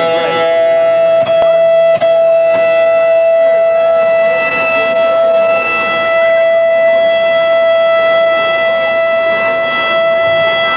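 Electric guitar feedback through an amplifier: one steady, loud tone held on without a break.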